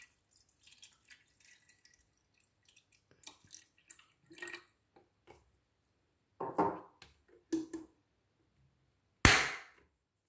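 Water poured from a plastic measuring cup into a baby food steamer's water tank, heard as a faint trickle and drips. Then several handling knocks follow, and one loud sharp knock near the end.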